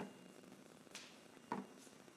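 Near quiet: room tone, with one faint short tap or click about one and a half seconds in.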